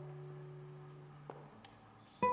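Classical guitar: a low chord left ringing fades away over about a second and a half, leaving a short hush with two faint clicks before the next chord.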